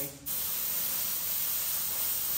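Air hissing steadily out of a car tyre through its valve stem as a valve core removal tool opens it, deflating the tyre. The hiss dips briefly just after the start, then runs on evenly.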